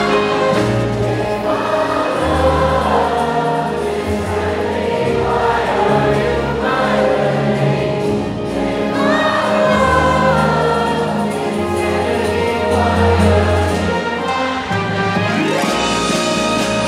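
A large concert crowd singing along with a symphony orchestra playing an orchestral arrangement of a pop song.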